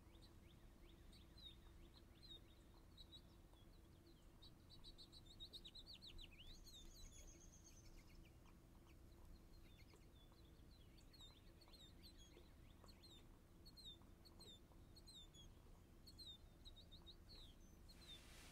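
Faint bird chirping: short repeated chirps throughout, with a busier flurry about five to seven seconds in, over a low steady room hum. Now and then a light tap of a stylus on a tablet screen.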